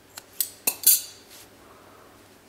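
Metal scissors snipping yarn: four sharp metallic clicks in quick succession within the first second, then a fainter one.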